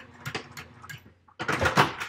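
Domestic sewing machine sewing slowly back and forth across the end of a zipper with basting stitches to form a thread stopper: needle strokes clicking about four times a second over a faint motor hum. Near the end comes a louder, noisier burst.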